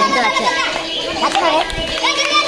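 Several people's excited, raised voices talking and calling out over one another.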